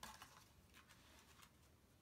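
Near silence: room tone, with a few faint soft clicks in the first second and a half.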